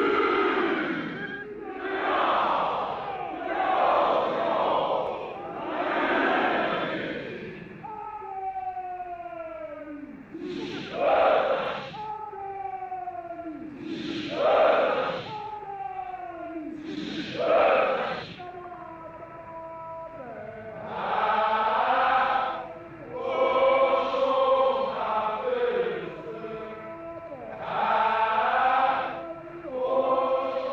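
Massed male voices of Zulu warriors chanting a war song as a salute. It opens with swelling phrases about every two seconds, moves into long falling cries broken by three loud shouted bursts, and near the end settles into a regular rhythmic sung chant.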